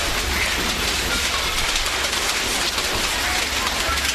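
Steady, even rushing noise of water, like a stream or rain, holding level throughout with a low hum beneath it.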